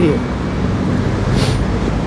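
Steady low rumble of outdoor background noise, with a short hiss about a second and a half in.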